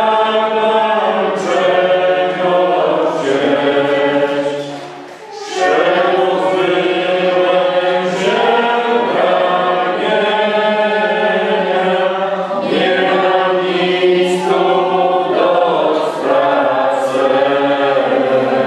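A choir singing slow, sustained phrases of a hymn, with short breaks between phrases about five and twelve seconds in.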